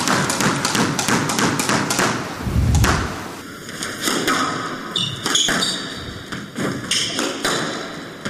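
Squash ball thudding off the court walls and rackets during a rally, a rapid run of knocks followed by scattered hits, with short shoe squeaks on the court floor.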